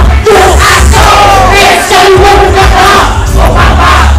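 Crowd at a live hip-hop show shouting and chanting together at full voice, very loud and close up. The backing beat mostly drops out under the shouts, with deep bass coming back only in short stretches.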